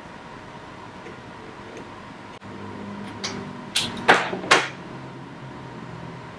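Paper backing being picked and peeled off a small strip of aluminium foil tape: a handful of short scratchy sounds about halfway through, the last two loudest, over quiet room tone.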